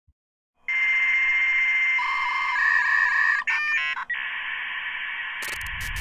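Electronic sound-effect intro: a steady high beep over thin, telephone-like hiss that shifts pitch twice, then a quick flurry of beeps about three and a half seconds in, then hiss again. A low bass beat comes in near the end.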